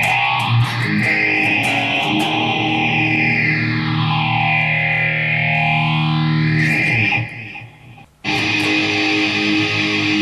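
Distorted electric guitar played through a Digitech RP90 multi-effects preset, with a slow sweeping effect that rises and falls in pitch over several seconds, ending on a held chord. The sound fades out about seven seconds in, and after a brief gap the guitar comes back in abruptly on the next preset.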